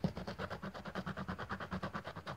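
Scratch-off coating on a 'Diamentowe 7' lottery scratch card being scraped in quick back-and-forth strokes, about ten a second, in an even rhythm.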